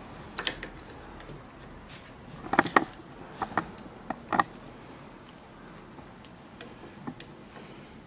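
Light clicks and taps of plastic wire connectors and a circuit board being handled while fitting a heat press's replacement control board. There are a couple of sharp clicks about half a second in, a cluster around two and a half to three seconds, another near four and a half seconds, and after that only faint ticks.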